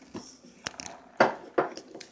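A few light knocks and clicks of handling in a small room, the loudest a little over a second in.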